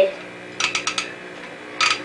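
A quick run of about five sharp, light clicks and rattles from a small desk lamp's parts being handled, about half a second in.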